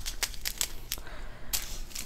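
Small plastic bags of diamond painting drills crinkling as they are slid and pushed along a table: a run of short, sharp crackles, the loudest about one and a half seconds in.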